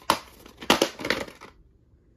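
A VHS cassette in its cardboard sleeve handled and turned over in the hand: a run of rustling and scraping with a few sharper knocks, stopping about a second and a half in.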